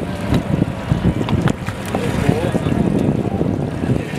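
Wind buffeting the microphone in a low, uneven rumble, over water and the knocks of two boats side by side.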